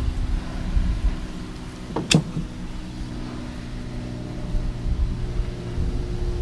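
Steady low mechanical hum, several held tones, over low wind rumble on the microphone, with one sharp click about two seconds in.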